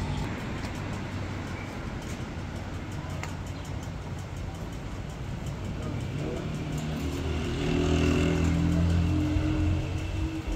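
Street traffic: vehicles passing on a city street, with an engine growing louder for a couple of seconds near the end.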